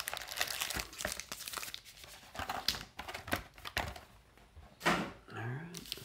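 Foil wrappers of trading card packs crinkling as hands pull them from a hobby box and handle them: a dense run of irregular crackles for about four seconds, then quieter.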